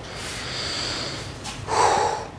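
A man drawing a long breath, followed by a second, shorter breath near the end, just before he reads aloud.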